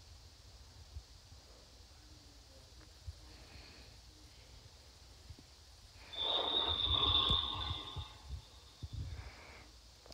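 Faint room noise with a couple of light taps. About six seconds in, audio starts from the tablet's speaker as a video begins to play, with a steady high tone over it for about two seconds.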